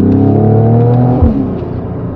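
Mercedes-AMG GLE 53's turbocharged inline-six heard from inside the cabin under acceleration, its note rising steadily. A little over a second in there is a sharp bang from the exhaust as the revs drop.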